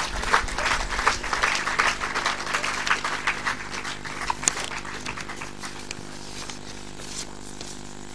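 Audience applauding: dense clapping that thins out and dies away about five seconds in. A steady low hum runs underneath.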